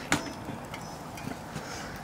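One sharp metallic click just after the start, then a few faint ticks and taps from handling a bicycle's wheel and frame.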